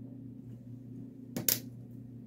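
Faint steady low hum, broken by a brief double clack about one and a half seconds in: wooden pencils knocking together as one is picked up off the desk.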